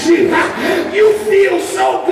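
A man preaching into a handheld microphone through a PA system, his voice raised to a shout in a pitched, chant-like cadence with short held notes.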